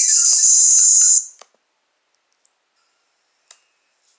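Cartoon soundtrack playing through a laptop speaker: a loud, high hissing sound for about a second that cuts off suddenly. Then near silence with a few faint clicks.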